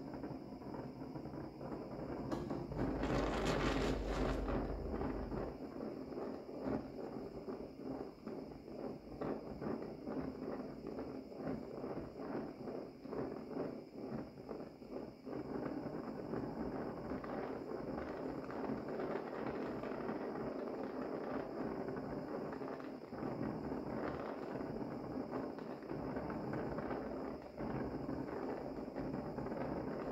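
Oxy-acetylene torch with a brazing tip burning a rich flame, a steady rushing hiss with constant crackle, heating a tool-steel cutter to red heat for hardening. The flame sounds louder for a couple of seconds about three seconds in.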